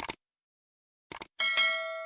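Two brief clicks, then a single bell-like ding about one and a half seconds in that rings on and fades away over about a second.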